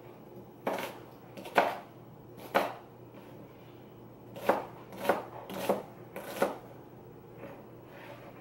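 Kitchen knife chopping a small onion on a cutting board: about eight separate, irregularly spaced knife strikes on the board.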